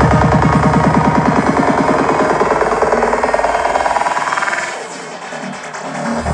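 Electronic dance music played loud through a club sound system, with a fast bass pattern of about eight hits a second. About four seconds in the bass drops out for a short breakdown, and the music grows quieter until the end.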